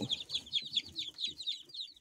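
Several young chicks peeping: a steady run of short, high chirps that each drop in pitch, several every second.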